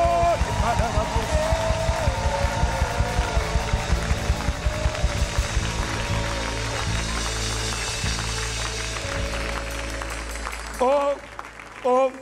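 Live church worship band playing a steady drum beat under electric guitar and keyboard. About six seconds in the drums stop and a held keyboard chord carries on under the congregation's shouts of praise.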